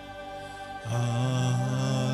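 Slow worship music: a bowed cello and keyboard hold soft sustained chords. About a second in, the music swells louder as singing voices come in on long held notes.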